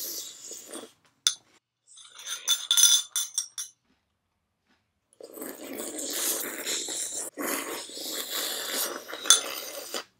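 Exaggerated loud slurping of cereal milk off a metal spoon, with mouthfuls being chewed and the spoon clinking against a ceramic bowl. A short burst comes about two seconds in, then, after a pause, a long unbroken stretch of slurping and chewing from about five seconds in, with one sharp clink near the end.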